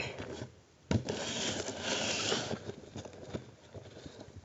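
Handling noise: a knock about a second in, then rubbing and scraping against the device close to the microphone for about a second and a half, with a few light clicks after.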